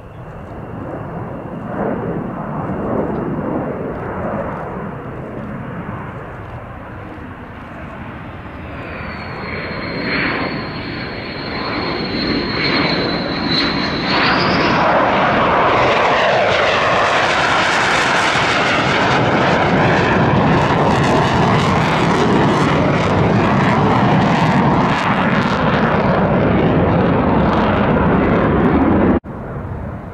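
F-15E Strike Eagle's twin turbofan jet engines: first a distant rumble, then a high steady whine building as the jet comes in low with landing gear down, rising in pitch as it nears. A loud jet roar follows as it passes close, and the sound cuts off abruptly shortly before the end.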